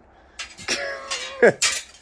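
A man laughing in breathy bursts, the loudest burst about one and a half seconds in.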